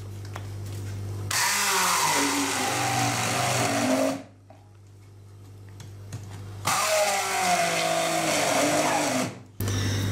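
Hand-held stick blender pureeing fresh strawberries in a tall beaker, run in two bursts of about three seconds each with a short pause between. Its pitch wavers as the blade works through the fruit.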